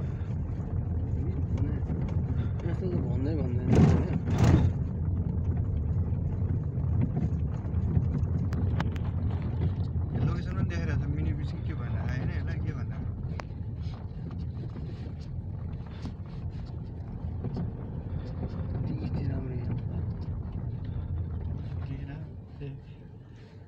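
Steady low rumble of a car's engine and tyres, heard from inside the cabin while driving slowly through town.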